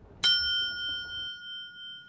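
A single bell-like ding, struck once about a quarter second in and then ringing on with a steady tone that slowly fades.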